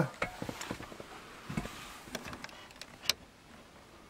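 Faint handling rustles and small knocks, then one sharp click about three seconds in: the switch of the motorhome's overcab ceiling light being pressed on.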